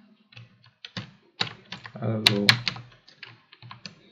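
Computer keyboard being typed on: an irregular run of quick key clicks as a short line of code is entered.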